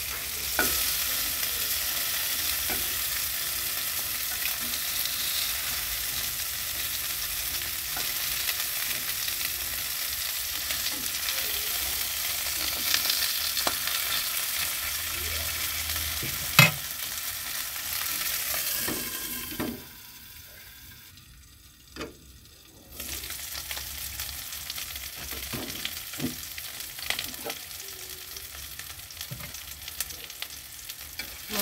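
Fish pieces sizzling as they shallow-fry in oil in a black pan, with a spatula scraping and turning them near the start. A single sharp click comes a little past halfway; soon after, the sizzle drops away for about three seconds, then returns quieter.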